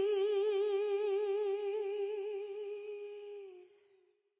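A singing voice holding one long note with vibrato, fading out near the end: the close of the background song.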